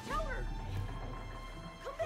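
Two short rising-and-falling whimpering vocal noises from a boy, one just after the start and one near the end, over a low steady drone of film score.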